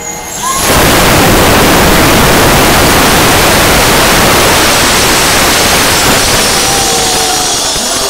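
Thousands of jet balloons let go at once by a stadium crowd: a sudden, loud, steady rush of escaping air starting about half a second in. It thins slowly toward the end, when single balloons are heard whistling as their pitch glides.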